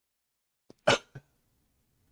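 A man's single sharp, cough-like burst of breath about a second in, followed by a smaller one, set off by a nasal test swab rubbed inside his nostril.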